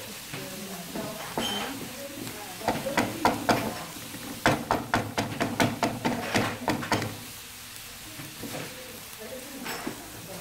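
Chopped vegetables sizzling in oil in a frying pan, stirred with a wooden spatula. A quick run of scrapes and knocks against the pan comes in the middle, from about three to seven seconds in.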